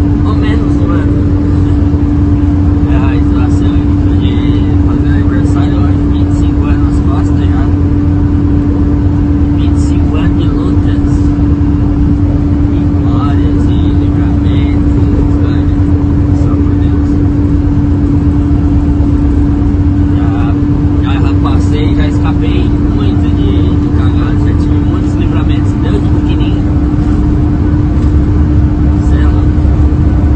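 Truck engine and road noise heard inside the cab while driving, a steady loud drone with a constant hum that holds one pitch throughout, with intermittent talking over it.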